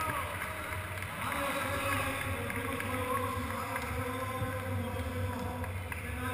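Indistinct voices of people talking in a large sports hall, over a steady low hum.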